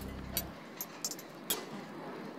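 A live band's song ends: its last sustained bass note cuts off about half a second in. Quiet room sound with a few sharp clicks follows.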